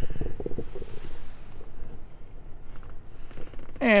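Rustling and rubbing handling noise from a handheld phone camera being moved about inside a car cabin, densest in the first second, then a quiet steady hiss with a few faint ticks.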